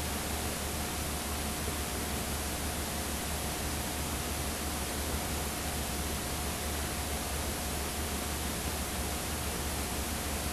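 Steady hiss with a low hum under it and a faint steady tone, the noise of a blank video signal with no programme sound.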